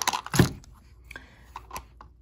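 Handling noise: a single sharp knock about half a second in, then a few faint clicks, as a small clear plastic parts box is picked up from the workbench and brought to the camera.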